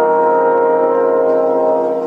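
Trombone quintet holding one sustained chord, which begins to fade near the end.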